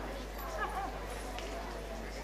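Indistinct voices of people talking, with a few short pitched vocal sounds about half a second in, over a steady low hum.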